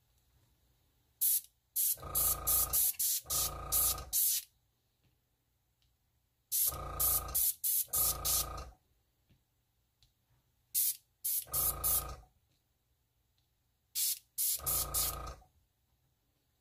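Airbrush blowing air and ink in four groups of quick, sharp spurts, each group with a hum underneath, to push alcohol ink across glossy photo paper.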